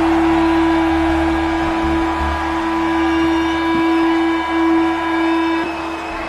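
Live rock band's final held note ringing out at the end of a song: one steady sustained tone over a bass that fades away in the first couple of seconds, cutting off shortly before the end.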